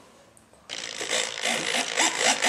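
Scratchy rubbing and scraping handling noise against the foam model plane, starting just under a second in and going on irregularly.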